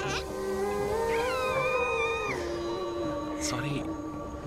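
A baby cooing, one short pitched call about a second in, over background film music holding a long sustained note.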